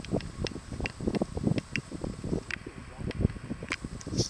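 Wind buffeting the microphone in irregular gusts, with brief high chirps scattered through.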